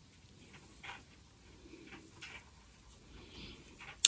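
Near silence with a few faint, short rustles as a needle and metallic yarn are drawn through by hand, sewing buttonhole stitches.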